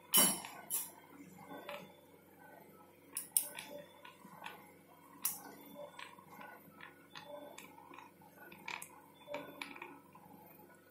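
Steel surgical instruments, a needle holder and forceps, clicking and clinking as they are handled during suturing. The clicks are sharp and come at irregular intervals, the loudest right at the start.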